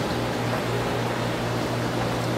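Steady hum and rushing of reef-aquarium equipment: pumps and circulating water running without change.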